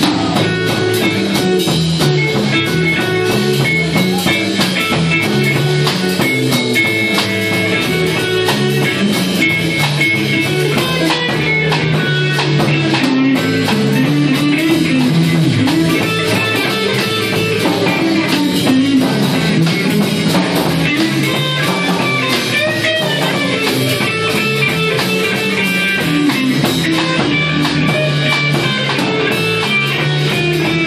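A live rock band plays electric guitars over a drum kit, steadily and loudly, without a break.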